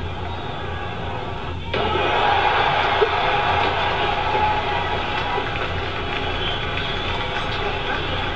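Low-fidelity soundtrack of a prank video playing: music mixed with background noise and faint voices. It changes abruptly and gets louder about two seconds in.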